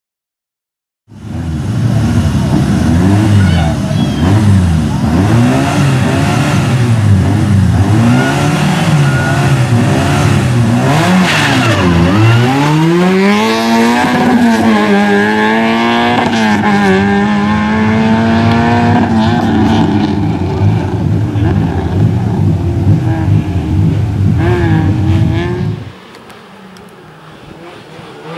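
Peugeot 106 slalom car's engine revving hard, pitch climbing and falling with each gear change, then a long rising pull that settles into a steadier drone. Near the end the loud engine sound cuts off abruptly, leaving a much quieter engine note.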